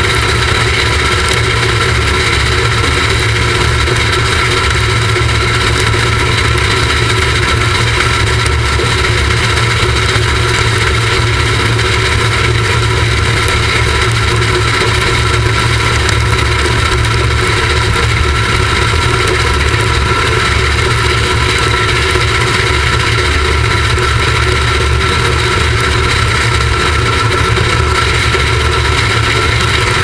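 Oil-burning R class Hudson steam locomotive running at speed, heard from a camera on top of its boiler: a loud, unbroken rush of wind and exhaust with a deep rumble beneath and a few steady whistling tones, no separate exhaust beats.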